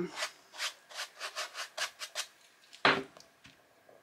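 Quick rubbing strokes on the surface of a painted canvas, about five a second for two seconds, followed by one louder knock a little before three seconds in.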